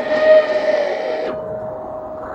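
A voice holding one long, steady note, with a breathy hiss over it that stops about a second and a half in.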